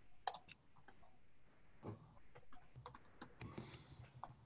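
Faint, irregular keystrokes on a computer keyboard as someone types, picked up over a video-call microphone.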